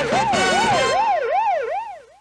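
Warbling siren sound effect rising and falling about two and a half times a second, over the final bars of a cartoon's opening theme music. The music stops about a second in, and the siren fades out near the end.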